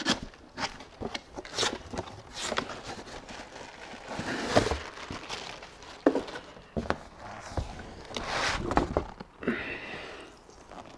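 A cardboard guitar shipping box and its packing being handled: a string of knocks and taps with scraping and rustling of cardboard and a plastic bag, swelling twice, as a hard guitar case is pulled out.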